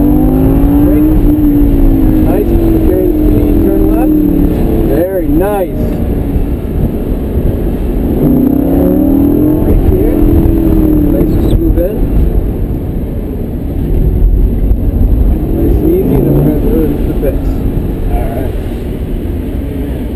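Lamborghini Gallardo V10 engine heard from inside the cabin, pulling hard with pitch rising three times and easing off between, as the car is driven around a cone course.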